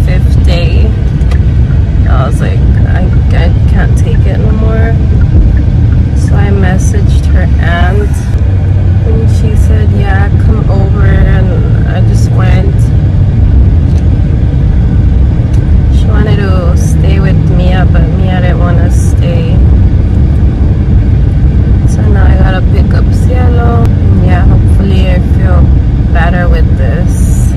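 Steady low rumble of a car being driven, heard from inside the cabin, with a woman talking over it.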